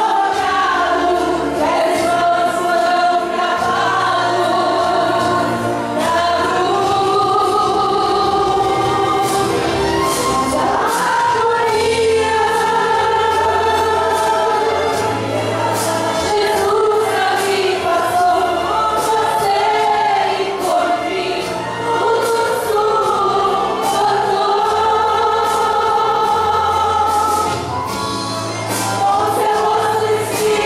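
A women's choir singing a Portuguese gospel hymn, led by a woman singing into a microphone, over an instrumental accompaniment with a bass line that moves in steps.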